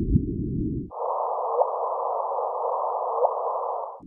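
Electronic sound design in an instrumental post-rock track: a dull, low band of filtered hiss switches about a second in to a brighter, higher band over a steady hum, then drops back at the end. A short rising chirp sounds about every second and a half.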